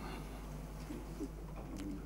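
Pause in speech: room tone with a steady low hum, and a faint, short low-pitched sound about a second in.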